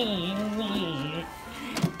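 A person's voice in a wavering, sung line with no clear words, gliding up and down in pitch and trailing off a little over a second in. A single sharp click comes near the end.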